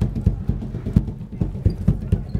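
Hand drum played with bare hands in a quick, steady rhythm of about seven strokes a second: deep low strokes with a few sharper, louder slaps.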